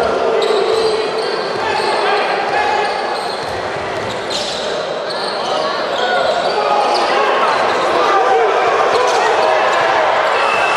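Basketball dribbled on a hardwood court, with short squeaks of shoes and the voices of players and spectators, all echoing in a large sports hall.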